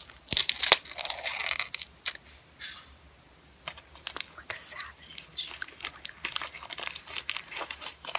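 Plastic lollipop wrapper crinkling and tearing close to the microphone as it is pulled off with teeth and fingers: a dense run of crackles in the first two seconds, then further bursts of crinkling.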